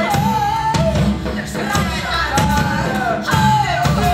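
Live cabaret music: a woman's voice sings long held notes that slide downward in pitch, over a rhythmic band accompaniment.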